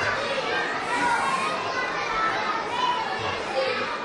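Many children's voices chattering and calling out at once.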